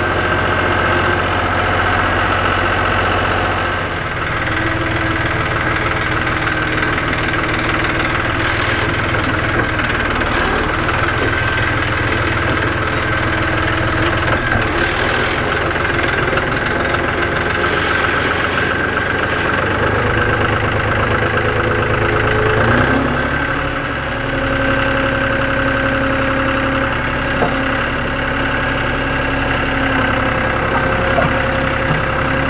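John Deere utility tractor's diesel engine running while its front loader works, the engine note shifting a few times as the revs and load change.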